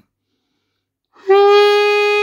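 A saxophone mouthpiece and neck played on their own, without the body of the instrument: one steady held note, blown evenly, that starts a little past halfway through.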